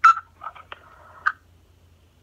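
Short crackling bursts and clicks from a smartphone's speaker during a call, starting with a sharp loud burst and dying away after about a second and a half.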